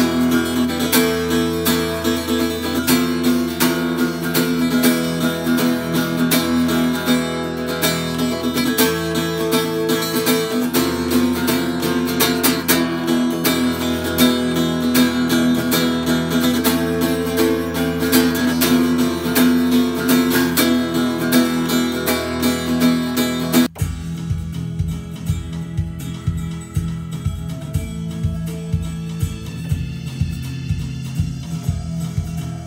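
Acoustic guitar strummed in steady, full chords. A little before the end it cuts off suddenly, and quieter music with a regular low beat takes over.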